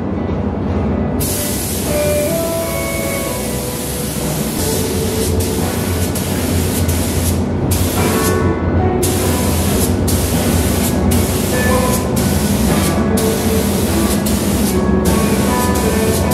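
Compressed-air paint spray gun hissing as epoxy primer is sprayed: one longer pass, then a quick series of short bursts as the trigger is pulled and released roughly once a second. Background music plays underneath.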